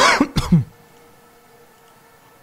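A man clearing his throat in two quick bursts, then only a faint steady hum.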